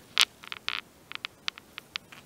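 A series of faint, irregular clicks and ticks, about a dozen in two seconds; the loudest comes about a quarter-second in.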